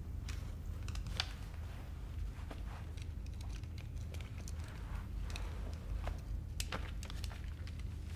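Steady low hum of room tone, with faint scattered rustles and small clicks of someone shifting in their seat and handling their glasses.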